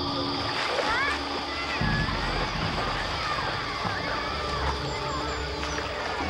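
Busy swimming pool: many children's voices and shouts overlapping with splashing water.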